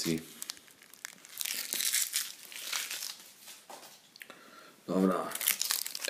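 Foil Panini Euro 2012 trading-card sachet crinkling in the hands in a few irregular bursts over about three seconds.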